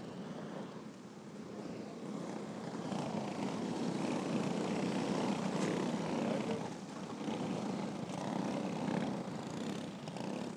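Several champ kart engines droning as the field circles at reduced speed under caution. The sound grows louder over the first half and ebbs briefly near the end as the karts pass.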